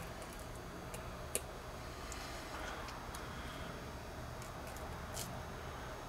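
A knife slicing up the belly of a small rainbow trout, heard as faint ticks and light cutting over a low, steady background hum. One sharper tick comes about a second and a half in.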